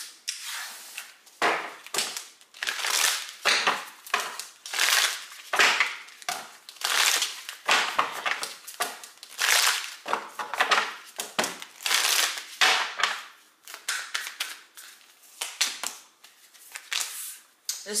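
A deck of tarot cards being shuffled by hand, a run of short papery rustles and snaps, about one or two a second.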